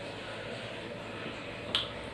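Low, steady room noise with one short, sharp click about three-quarters of the way through.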